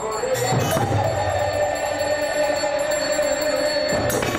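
Devotional aarti music: bells ringing continuously over khol drums, with a long steady ringing tone from about a second in.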